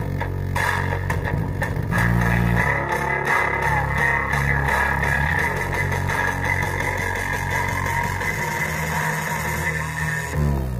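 Music with a heavy bass line and guitar, played through a woofer driven by a homemade single-transistor (D1047) 12 V amplifier during its sound test. The bass notes change about once a second.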